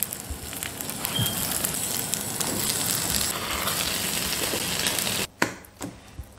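Rolled chicken shawarma sandwiches sizzling and crackling as they fry in a hot pan, cutting off abruptly near the end.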